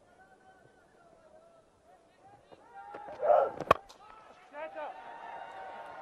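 Stadium crowd voices, a loud shout, then a single sharp crack of a cricket bat hitting the ball about three and a half seconds in. The crowd voices rise as the ball goes up into the air.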